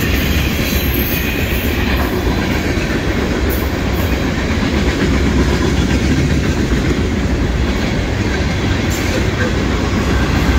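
Freight cars of a CSX mixed freight train rolling past: a steady, even rumble of steel wheels on rail, with a few faint clicks.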